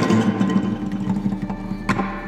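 Acoustic guitar playing a riff: notes ring and slowly fade, and a new note is plucked sharply near the end.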